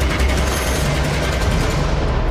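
Television news intro theme: a loud, dense rushing sweep over heavy bass, its high end fading away near the end.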